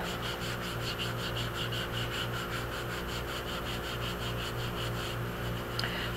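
Fine, rapid, even scratching, about ten strokes a second, from a fingertip and damp scrubber rubbing the seam line of a soft-fired porcelain greenware doll head, with a steady low hum under it.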